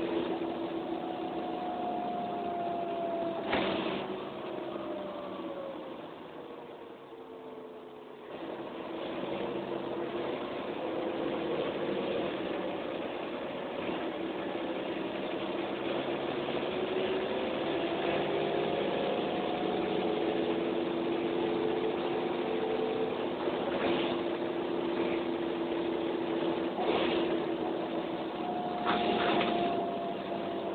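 Inside a Mercedes-Benz O405N single-decker bus on the move: the rear diesel engine's note falls and quietens as the bus eases off, then picks up sharply about eight seconds in and rises as it accelerates, settling into a steady drone. A few short knocks and rattles from the body come through, one early and two near the end.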